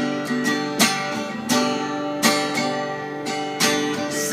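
Acoustic guitar strummed, chords ringing on between sharp, unevenly spaced strokes.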